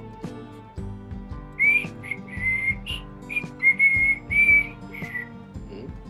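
A whistled tune of short held notes with small slides between them, over soft background music, beginning about a second and a half in.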